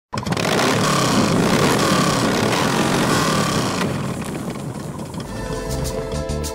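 A loud motorcycle engine running hard, with a few rises and falls in pitch. It dies down about four seconds in, and guitar-led music comes in near the end.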